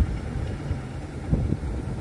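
Wind buffeting a phone's microphone in a low, uneven rumble, with road traffic in the background.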